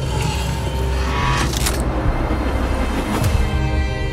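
Tense trailer music over a low rumble, with the sound of an approaching vehicle's engine mixed underneath.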